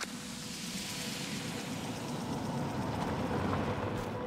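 A car driving along a residential street, its engine and tyre noise slowly growing louder, with a steady hiss of lawn sprinklers spraying.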